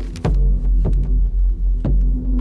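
Low droning background music with held low notes, crossed by three short crisp sounds of paper pages being turned in a ring binder: at the start, about a second in and near the end.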